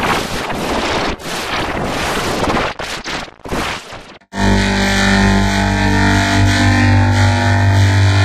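Loud rushing static-like noise with a few brief dropouts, then a sudden cut a little past halfway to a steady, sustained electronic drone chord.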